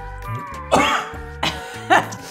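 A person coughing twice, short and loud, about a second apart, over steady background music.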